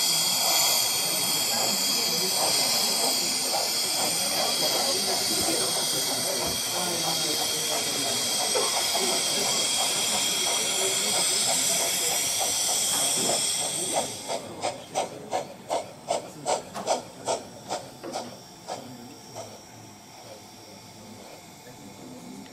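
Steam sound of a gauge 1 brass model of a Prussian T 9.3 (class 91.3-18) tank locomotive: a loud, steady steam hiss for about fourteen seconds while steam vents at the cylinders. Then the hiss stops and a run of exhaust chuffs follows, about three a second, fading away over several seconds.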